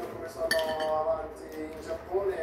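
Cutlery clinking once against a ceramic plate about half a second in.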